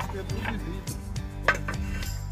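Flat ceramic germânica roof tiles clinking and knocking against each other and the wooden battens as they are set in place by hand: a few separate sharp clicks, the loudest about one and a half seconds in.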